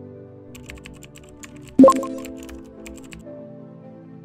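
Typing on a laptop keyboard: a run of irregular key clicks over soft background music, with a louder chord in the music about halfway through.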